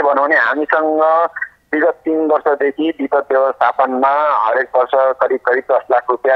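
Speech only: one voice talking steadily with short pauses, thin and narrow like a voice heard over a telephone line.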